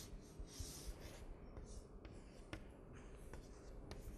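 Chalk scraping on a blackboard as lines are drawn, in several faint hissy strokes, followed by a few short clicks of the chalk against the board.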